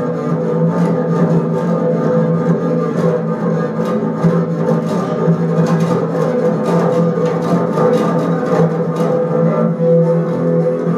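Double bass solo played with a bow: a steady low drone held throughout, with many short clicking strokes over it.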